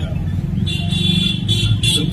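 Road traffic on a city street, a steady low rumble, with a high steady tone sounding for about a second in the middle.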